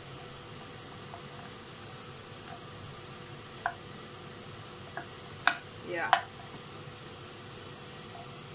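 Chopped onion, pepper and mushrooms sizzling steadily in a frying pan as they are stirred with a wooden spoon, with a few light knocks of the spoon against the pan in the second half.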